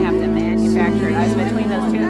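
Live worship music with steady held chords from the band, with several voices speaking and praying over it.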